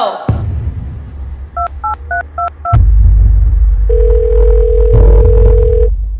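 Phone keypad beeping five quick dialling tones as a number is dialled, followed by a steady ringing tone on the line for about two seconds. A loud, deep rumble of background music runs underneath.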